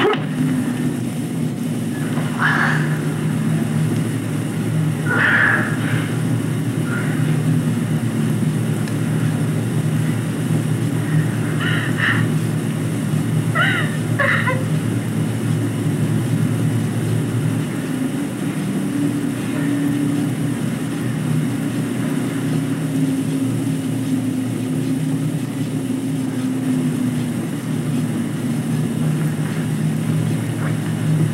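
Steenbeck flatbed editing table running, heard through a camcorder microphone as a steady low machine hum, with a few short faint higher sounds over it.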